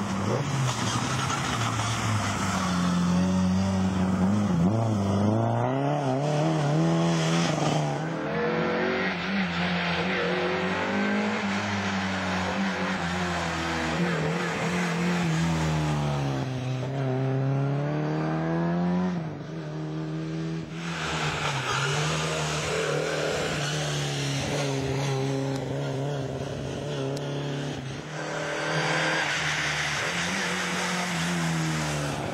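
Rally car engines revving hard, the pitch climbing and dropping again and again with gear changes and lifts as a car approaches and slides past. A sudden break about two-thirds of the way in, then another car is heard coming on hard.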